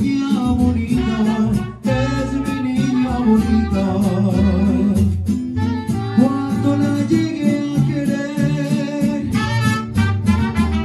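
Live mariachi band playing: a male singer on a microphone over strummed guitars, trumpets and saxophone, with a brief break in the music about two seconds in.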